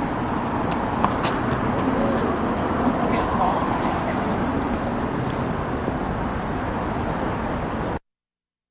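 Steady outdoor noise of road traffic, with a few sharp clicks in the first two seconds and faint voices murmuring a few seconds in.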